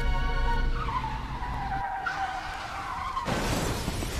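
Tires screeching in a skid, a wavering squeal that dips in pitch, as music fades out under it. A little over three seconds in, the squeal cuts off and a sudden rough noise takes over.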